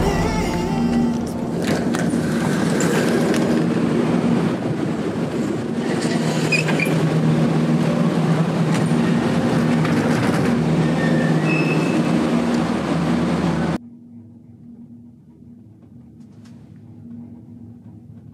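Gondola cabin running through the lift station, heard from inside the cabin: a loud, steady mechanical rumble and rattle, with a few knocks and short high squeaks from the wheels and haul-rope sheaves. About fourteen seconds in it cuts off abruptly to a much quieter, steady hum of the cabin riding out on the line.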